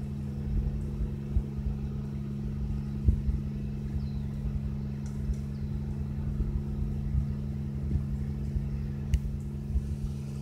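Single-engine Cessna's propeller engine droning steadily overhead, holding one pitch, with low rumble and a few bumps from the phone being handled.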